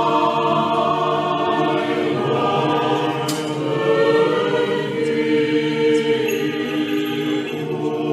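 Background music of a choir chanting, many voices holding long sustained notes.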